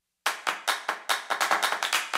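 The music cuts off. After a brief silence, a quick, uneven run of sharp handclaps starts, about six a second, opening an electronic music track.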